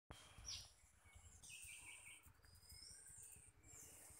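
Near silence: faint room tone with a few faint, short bird chirps in the background.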